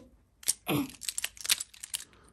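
Plastic parts of a Transformers Bumblebee action figure clicking and rattling as they are folded by hand into car mode: one sharp click about half a second in, then a quick run of small clicks and rattles.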